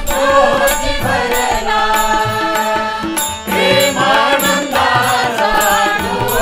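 Group devotional bhajan singing, with a harmonium holding steady chords, a tabla and small hand cymbals keeping a regular beat.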